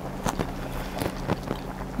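A person chewing a mouthful of food, with a few short, sharp mouth clicks, over a steady low hum.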